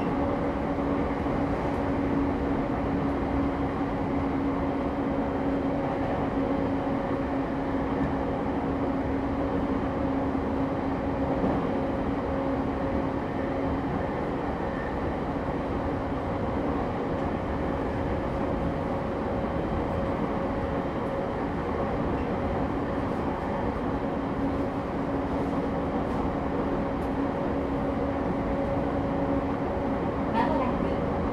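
E217-series commuter EMU running at steady speed, heard from inside the motor car MoHa E217-15: continuous wheel-on-rail rumble with a steady low hum.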